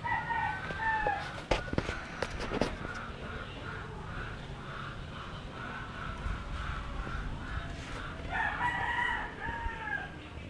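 A rooster crowing twice, at the start and again about eight seconds later, each crow falling in pitch at its end. Between the crows there is a run of short, evenly repeated calls, and a few sharp knocks come a second or two in.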